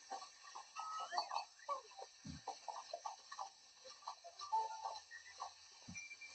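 Children talking on a television programme, heard off the TV set as filmed by a phone, with a brief low thump about two seconds in and another just before the end.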